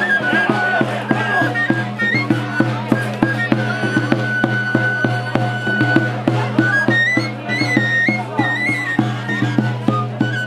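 Traditional folk music played live: a high pipe carries a stepping melody over a steady drum beat of about three strokes a second.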